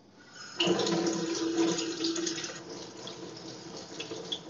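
Water running from a tap into a sink. It comes on suddenly about half a second in and is loudest at first, then settles to a steady rush.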